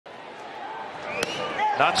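A fastball popping into the catcher's mitt, a single sharp smack about a second in, over a steady ballpark crowd murmur.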